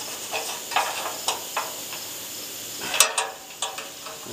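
A screwdriver and fingers scraping and clicking against a small metal clip on a sheet-steel welder panel while prying it up past its tabs: a handful of light metallic clicks and scrapes, the loudest about three seconds in.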